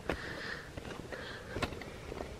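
Two soft breaths close to the microphone, with sharp clicks from the camera being handled as it is fitted onto a tripod.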